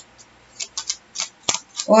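Tarot cards being shuffled and handled: a string of short, light card flicks with one sharper tap about one and a half seconds in.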